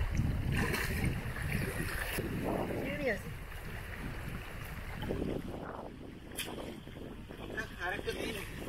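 Wind noise on the microphone over water splashing as a cast net is hauled in by hand and gathered from shallow river water. A brief voice is heard about three seconds in.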